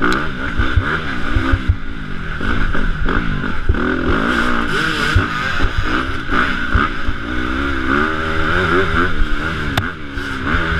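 Dirt bike engine, heard from an onboard camera, revving up and down over and over as the rider accelerates and shifts, with frequent short low knocks.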